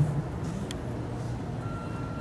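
Steady low background hum, with a faint high-pitched tone lasting about a second near the end.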